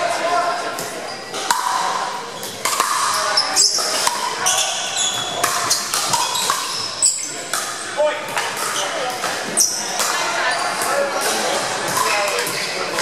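Pickleball paddles hitting a plastic pickleball: sharp pops coming in quick, irregular succession through a rally, with more hits from neighbouring courts, all echoing in a large gym.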